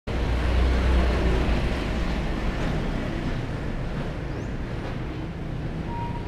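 Steady road traffic noise from the street, with a low rumble that is loudest in the first second and a half and then eases off, like a vehicle going past.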